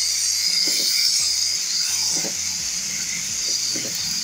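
Sliced mushrooms frying in oil in a nonstick pan, a steady sizzle, while a silicone spatula stirs them.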